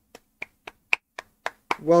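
One person clapping his hands slowly in applause, about seven sharp claps at roughly four a second. A man's voice begins just before the end.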